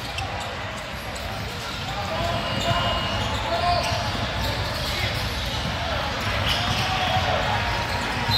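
Basketball game in a large echoing hall: the ball bouncing on the court amid a general hubbub of distant voices.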